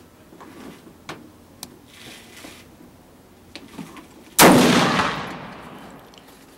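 A single shot from a 7mm-08 Remington Pachmayr Dominator single-shot pistol with a 14.5-inch barrel, about four and a half seconds in: one sharp, loud report followed by an echo that fades over about a second and a half. A few faint clicks from handling the gun come before it.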